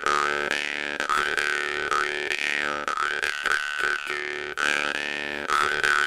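Bass jaw harp plucked in a steady repeating rhythm, a seven-beat pattern. It gives a continuous low buzzing drone, and a bright overtone melody rises and falls above it as the mouth shapes the sound.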